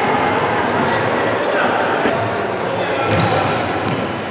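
Futsal being played in a large sports hall with a strong echo: an indistinct steady hubbub of players' and onlookers' voices, with sharp thuds of the ball being kicked, two close together near the end.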